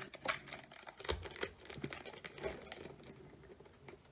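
Pokémon trading cards being pulled from a foil booster-pack wrapper and flicked through by hand: crinkling foil and a string of soft, irregular card clicks.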